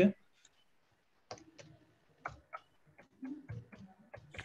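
Irregular clicks of typing on a computer keyboard, starting a little over a second in.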